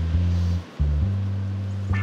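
Background music with a bass line of low held notes that change pitch every half second or so.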